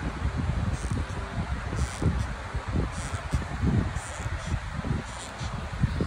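Rubbing and handling noise from a camera microphone held close against a knee as the leg is moved, with faint scratchy sounds about once a second.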